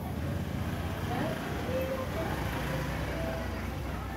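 A vehicle engine's low, steady rumble in the background, with faint voices.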